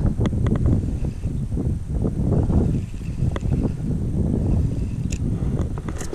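Wind buffeting the microphone, with a few light clicks as a small spinning reel is cranked in against a hooked fish.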